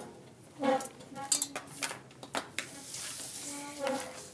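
A few sharp clicks and knocks of objects being handled on a tabletop, the loudest about a second in, between brief hesitant voice sounds.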